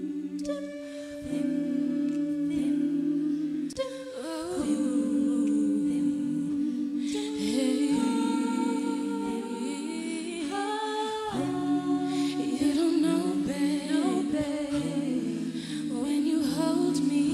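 All-female a cappella group singing a wordless, hummed chord intro, with a lead voice sliding and riffing over the sustained harmony from about four seconds in.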